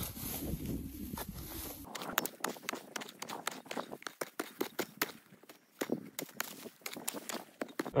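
Metal hand digging tool chopping and scraping into dry, hard clay soil in a quick, irregular series of sharp strikes, beginning about two seconds in, with loosened dirt crumbling.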